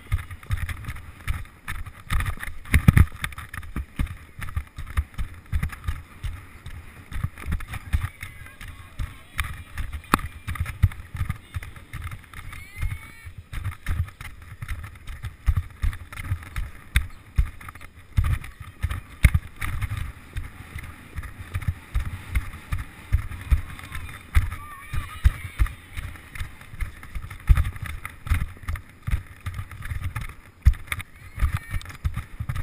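A horse cantering on a sand arena, heard from a helmet-mounted action camera: a continuous run of dull low thuds from the hoofbeats and the rider's movement jolting the camera, with a hiss of air over the microphone.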